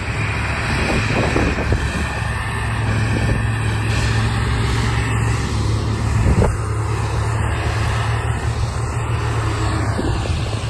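Diesel engine of a Challenger tracked tractor running steadily under load as it tows an air seeder through soft ground. There is a single sharp knock about six and a half seconds in.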